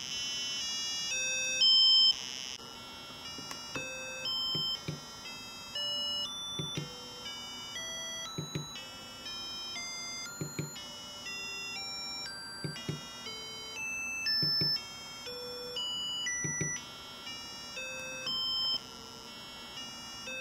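Small loudspeaker driven by an Arduino Uno sounding buzzy square-wave beeps that change pitch every half second. It steps a low C up through its octaves (65, 130, 260, 520, 1040 Hz), then drops back to the lowest note, and the cycle repeats.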